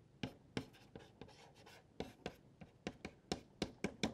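Mungyo soft pastel stick scratching across pastel paper in short, quick strokes: about a dozen brief, irregular scratches.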